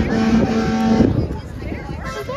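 A vehicle horn sounds one steady note for just over a second, then stops, with voices around it.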